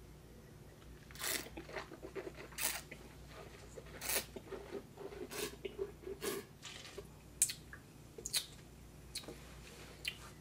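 A taster slurping white wine, drawing air through a mouthful of it, with wet swishing in the mouth. There are about eight short slurps, roughly one a second.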